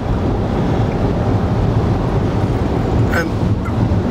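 Steady road and wind noise inside the cabin of a BMW i3 electric car at motorway speed, mostly a low tyre rumble with no engine sound.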